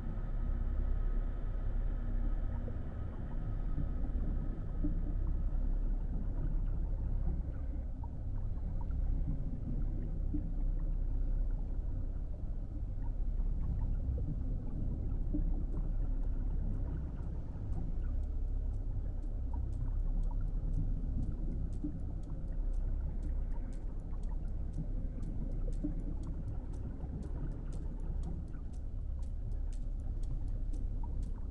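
Underwater ambience in a shallow pond: a steady low rumble that swells and eases slowly, with faint sharp clicks that grow more frequent in the second half.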